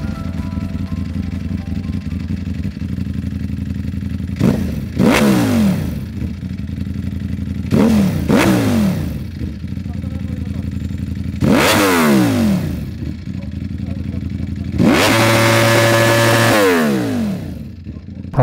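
2019 Ducati Panigale V4's 1,103 cc V4 engine through an Arrow titanium slip-on exhaust, idling and blipped by the throttle: two quick double blips, then a single rev, then a rev held for about two seconds that drops back to idle near the end.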